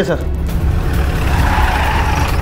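Police SUV pulling up with a tyre skid that swells through the second half, over a steady low engine or music drone.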